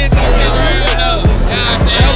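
Hip hop backing music with a deep bass line and sharp drum hits, a voice rapping over it.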